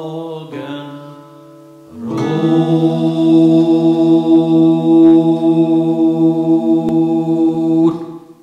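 Music: six-part, multi-tracked male voices singing the song's final sustained chord. A fading note gives way to a short lull, then the held chord enters about two seconds in and is cut off at the end.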